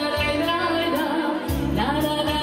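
A woman singing a Korçë serenade, an Albanian urban folk song, with long held and gliding notes, backed by keyboard and electric guitar over sustained bass notes and a steady beat.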